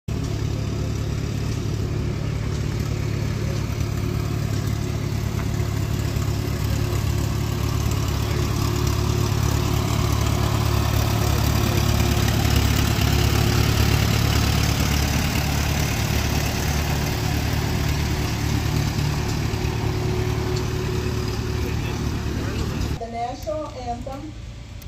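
Antique farm tractor engines running steadily as a parade of tractors drives past. The sound swells to its loudest about halfway through as a tractor pulling a wagon passes close by, then stops abruptly about a second before the end.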